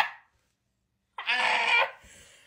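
A woman's short, high-pitched excited squeal, muffled behind her hands, coming about a second in after a near-silent pause.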